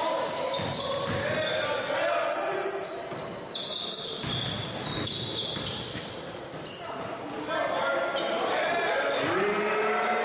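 Basketball dribbling on a hardwood gym floor during live play, with short high-pitched sneaker squeaks and indistinct voices of players and spectators calling out in the large gym.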